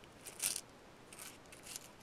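A few short, soft rustling scrapes from a clear plastic bead organizer and the small brass findings in it being handled by fingers, the clearest about half a second in.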